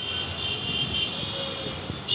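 Steady outdoor background noise, a continuous roar with a high hiss, fading in at the start.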